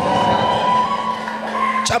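Sustained chord from a church keyboard, held steady with a slight shift a little past the middle, over a low murmur from the congregation.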